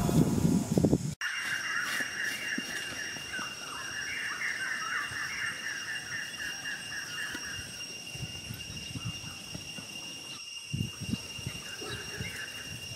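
Background music cuts off about a second in, giving way to rural outdoor ambience. A fast run of high chirps lasts several seconds over a steady thin insect drone. Near the end come soft scrapes and knocks as a stone disc is handled on dirt.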